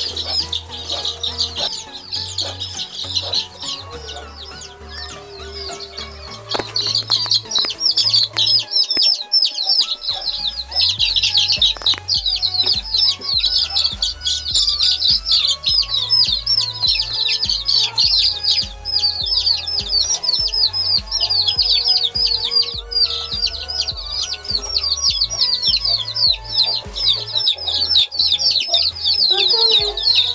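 A brood of young chicks peeping continuously, many quick falling-pitched cheeps overlapping one another.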